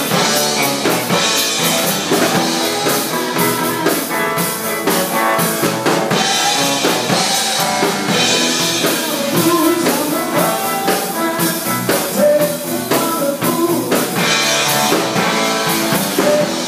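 Live band playing a song on electronic keyboard, electric guitar and drum kit, with bright cymbal washes coming and going.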